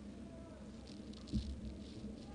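Faint football-pitch ambience under a steady low hum, with one soft, dull thump a little over a second in.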